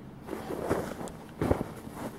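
A few footsteps in snow.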